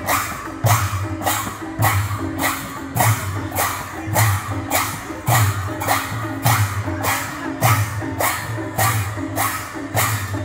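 Kirtan percussion: large brass hand cymbals clashing in a steady fast beat, about two to three strokes a second, over a repeating pattern of deep barrel-drum strokes.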